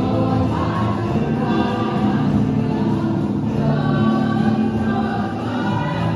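Choral music: a choir singing long, held chords.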